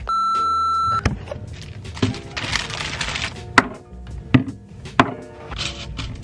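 A steady, high electronic beep lasting about a second, then background music with a beat and occasional sharp knocks.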